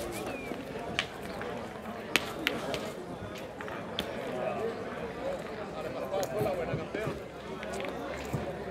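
Indistinct chatter of several people talking, with a few sharp clicks scattered through, the loudest about two seconds in.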